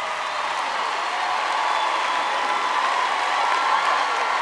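Studio audience applauding and cheering, a steady wash of clapping that grows slightly louder.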